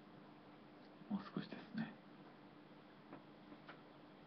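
Faint room tone with a low steady hum, broken about a second in by three short, soft voice sounds, a quiet murmur near the microphones.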